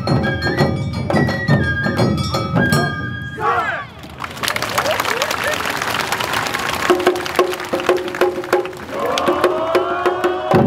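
Awa Odori festival band playing: a stepped flute melody over sharp percussion beats. About three seconds in the melody breaks off, and a loud burst of shouting and cheering with continued percussion strikes fills the middle. The melody and beats come back near the end.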